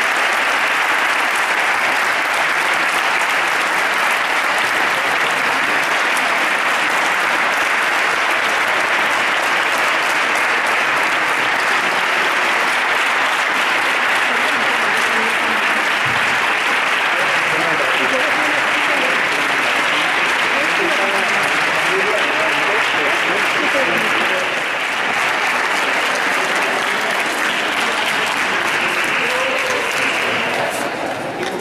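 A crowd applauding steadily and without a break. Voices and chatter come through the clapping in the second half, and the applause eases a little for the last few seconds.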